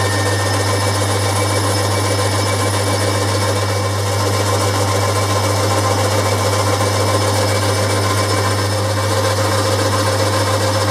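Boxford lathe running with a steady motor hum while a boring bar cuts inside the drilled end of a turning bar, a little louder from about four seconds in.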